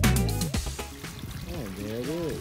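Backyard pond waterfall pouring steadily over stacked rocks into the pond, under the last low note of a music track that fades out in the first half-second. A voice makes a brief sound near the end.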